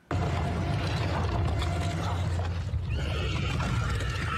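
Soundtrack of an animated episode playing: a steady low rumble under a wash of noise, starting suddenly, with a higher wavering sound joining about three seconds in.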